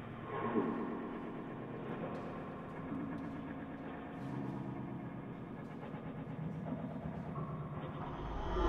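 A string quartet of violins, viola and cello playing quiet, long bowed notes in slowly shifting chords, the harmony changing every second or two.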